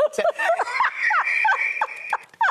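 People laughing: a run of short laughs, with a high-pitched laugh held through the second half.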